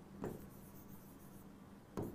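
Faint strokes of a pen writing on an interactive display screen, with a short soft sound about a quarter second in and another near the end.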